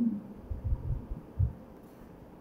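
Quiet room tone with a few soft, low thuds, about half a second in and again near a second and a half.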